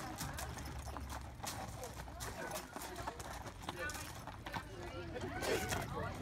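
A pair of Percheron draft horses walking on gravel, their hooves clopping and crunching in an uneven series of steps.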